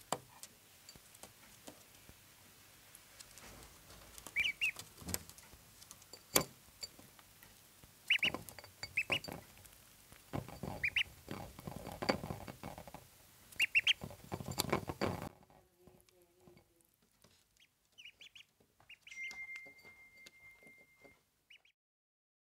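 Ducklings peeping in short high calls, often two or three in quick succession, while they peck crumbled food from a ceramic plate, their bills clicking and tapping against the plate. The pecking thins out about two-thirds of the way through, leaving scattered peeps.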